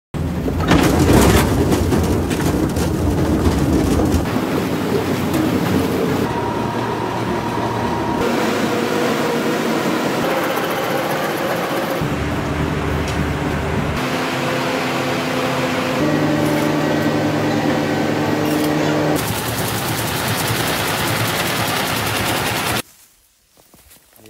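Loud mechanical noise of vehicles and machinery that cuts abruptly to a different sound every few seconds. Steady hums come through in the middle, and everything stops suddenly about a second before the end.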